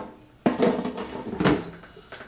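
An air fryer basket sliding in and shutting with a sharp click, a second knock about a second later, then one short high electronic beep from the air fryer's control panel as it is started.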